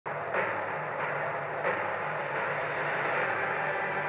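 Sound effect of a film projector running: a steady mechanical whir and rattle with a couple of clicks near the start.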